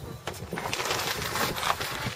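Light clicking and crackling as sausages are settled onto a smoker's metal grill grate.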